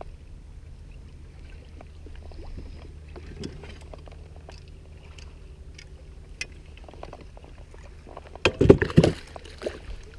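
A bass being landed with a net beside a canoe: light wind and small knocks and clicks against the boat, then a loud flurry of splashing and thumps near the end as the fish comes into the net.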